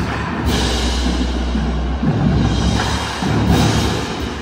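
Indoor percussion ensemble's opening music: a low sustained drone with deep, timpani-like booms, and a loud crashing hit about half a second in and another near the end.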